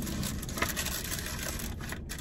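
Paper sandwich wrapper crinkling and rustling in irregular little crackles as a sandwich is handled in a foam takeout container, over the low steady rumble of a car's interior.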